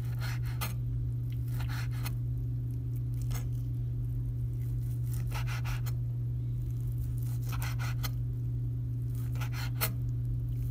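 A kitchen knife slices through cooked pork belly and knocks on a wooden cutting board in short clusters of strokes about every two seconds, over a steady low hum.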